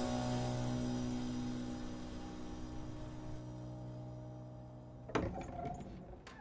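Background score ending on a low sustained note with overtones that slowly fades away. About five seconds in, a sudden thud is followed by a few sharp clicks.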